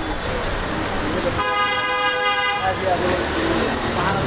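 A vehicle horn sounds once: one steady note lasting just over a second, starting about a third of the way in, over street noise and voices.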